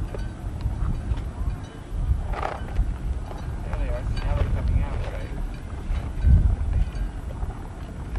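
Wind buffeting the microphone in uneven low gusts, with faint voices of people in the background.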